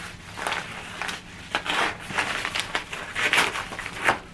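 Orange Amazon mailer bag crinkling and rustling in quick, irregular bursts as it is handled and cut open with scissors.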